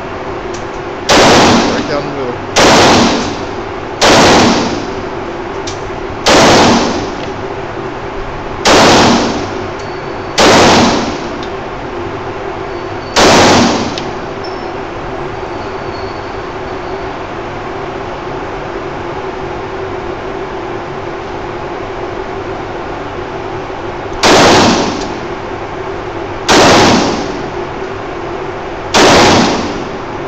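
Semi-automatic pistol firing single shots at an indoor range, each report ringing briefly in the enclosed lane. There are ten shots: seven spaced about one and a half to two and a half seconds apart, then a pause of about eleven seconds, then three more. A steady low hum runs underneath.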